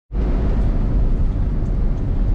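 Car driving along: a steady low engine and road rumble with tyre hiss, heard from inside the cabin.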